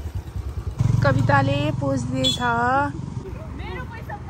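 Motorcycle engine running at low speed as it comes up the road. Its rumble grows louder about a second in and fades near the end, with a raised voice over it.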